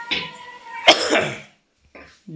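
A person coughing: one sharp, loud cough about a second in, with a softer breath or throat sound at the start.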